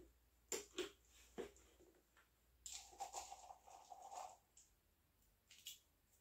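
Faint pattering and rustling of a dry seed-and-flower treat mix sprinkled by hand from a small glass jar into a plastic hamster carrier, with a few light taps and a longer rustle about halfway through.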